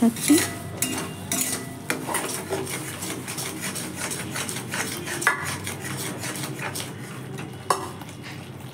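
A metal spatula stirring and scraping a thick, wet coconut-paste masala around a metal wok: an irregular run of scrapes and clinks against the pan, with one sharper clink near the end.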